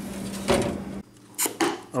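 A glass food-storage container set down on a refrigerator shelf with a single clunk about half a second in, over a steady low hum. The hum cuts off abruptly about a second in, followed by a couple of light knocks.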